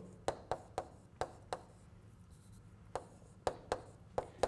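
Chalk tapping and scraping on a blackboard as symbols are written: a quick run of short, sharp taps, a pause of over a second around the middle, then a few more taps near the end.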